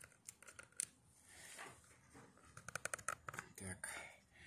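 Fingers handling the plastic case of a mini DLP projector and pressing its power button, making a scatter of light clicks and taps.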